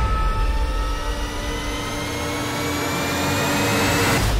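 A jet-like sound effect: a whine made of several tones that climbs slowly in pitch, over a rushing roar and a deep rumble, cutting off suddenly at the end.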